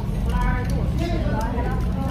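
Voices talking in the background over a steady low rumble, with no words clear enough to transcribe.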